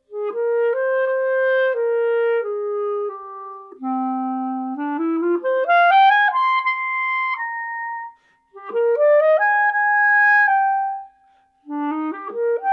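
Buffet professional wooden B♭ clarinet played solo: three short melodic phrases with brief breaths between them. The middle phrase dips to a low note, then climbs in a quick upward run to a held high note.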